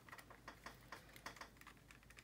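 Faint, irregular clicks and taps of hard plastic and resin model parts being handled and pressed together in the hands, several a second.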